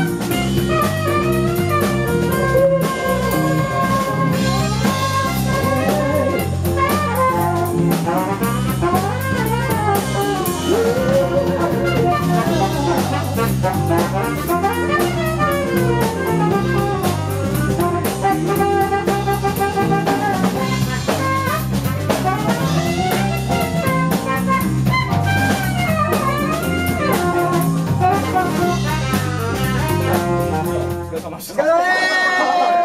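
A live band playing a song at full volume: drum kit and electric bass keeping a steady groove, with a wavering, gliding melodic lead line over them and no sung words.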